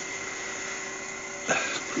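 Galaxy DVR wood lathe running steadily, with a cloth held against the spinning workpiece rubbing on the wood as a finish is applied.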